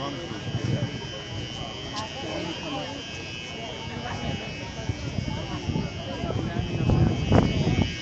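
Steady buzzing hum from the rally's PA sound system, over crowd voices that grow louder near the end.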